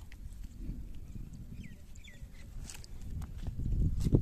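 Outdoor sound on a handheld phone microphone: a low rumble of wind and handling with scattered footsteps or knocks. Two short chirps come near the middle, and the sound grows louder near the end.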